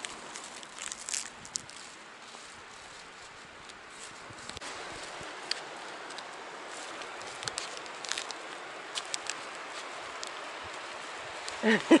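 Steady outdoor background hiss that grows a little louder after about four seconds, with scattered light clicks and rustles from handling and footsteps.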